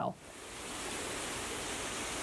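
Water rushing steadily in a tank holding salmon: an even hiss that swells in over the first second, then holds.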